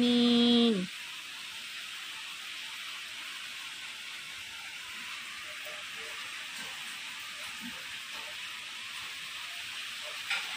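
Steady rain falling, an even hiss with no breaks. A brief held voice sounds in the first second.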